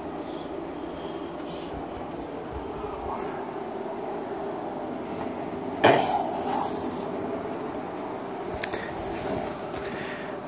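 Steady low background rumble, with one sharp knock about six seconds in as the handheld phone is moved.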